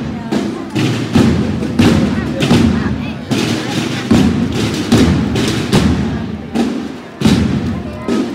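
Holy Week procession drums beating a slow march, a heavy stroke roughly every three-quarters of a second.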